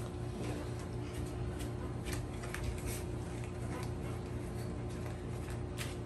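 Tarot cards being gathered and handled on a cloth-covered table: soft scattered clicks and rustles over a steady low room hum.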